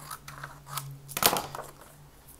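Scissors cutting through cardstock in a few short crisp snips, the loudest just over a second in.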